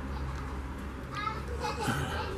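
Faint voices in the background, with a high-pitched voice calling out over the last second, over a steady low hum.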